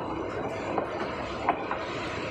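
Nilgiri Mountain Railway metre-gauge train running along the track: a steady rumble of wheels on rails with a few sharp clicks, the loudest about halfway through.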